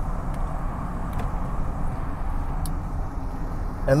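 Steady low rumble with no speech, and a few faint clicks.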